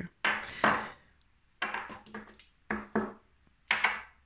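A few short knocks and rustles of objects being handled and set down on a tabletop, about four in all, each starting sharply and dying away quickly.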